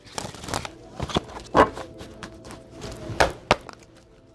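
A deck of divination cards being shuffled by hand, with several irregular sharp taps as the cards knock together.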